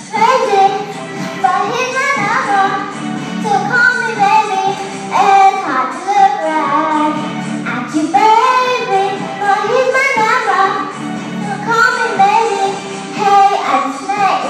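A young girl singing a pop song into a microphone over a recorded backing track.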